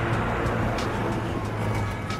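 A motor vehicle's engine running with a steady low hum amid street noise, fading near the end, with faint music playing in the background.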